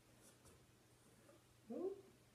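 Near silence, then near the end one short vocal sound that slides upward in pitch.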